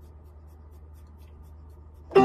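Quiet room tone: a steady low hum under a faint rustle as the pianist settles at the keyboard.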